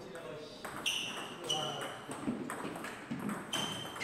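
Table tennis rally: the ball being struck by the paddles and bouncing on the table, a series of sharp pocks with a brief ring, several a second or so apart.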